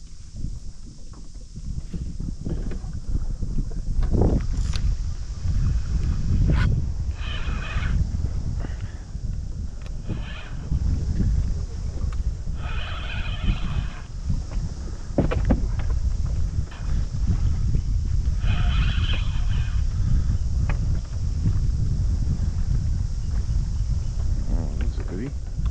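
Wind rumbling on the microphone, with several short bursts of whirring from a spinning reel being cranked.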